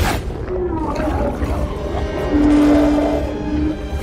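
Film soundtrack from an underwater shark attack scene: dramatic score over a constant deep rumble, with a single tone held for about a second and a half in the second half.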